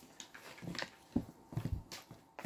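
Wooden chopsticks stirring and tossing instant noodles in a plastic bowl: a string of light, irregular clacks and knocks as the chopsticks hit the bowl and work through the sauced noodles.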